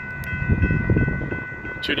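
Two electronic railroad-crossing bells of different types, one on each side of the crossing, ringing together as overlapping steady tones. A low rumble swells up and fades in the middle.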